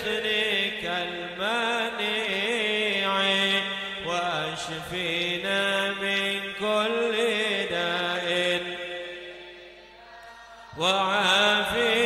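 A man chanting an Arabic munajat (supplication) solo into a microphone, with long held notes that bend and glide in pitch. The voice fades away around nine to ten seconds in, then comes back loud near eleven seconds.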